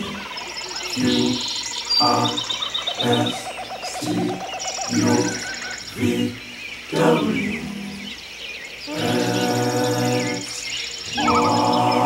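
Music: voices singing in harmony in short phrases and a few held chords, with no clear words, over repeated high bird chirps and calls.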